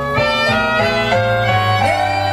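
Live jazz band music: a quick melodic line of short notes moving step by step over an upright double bass and keyboard accompaniment.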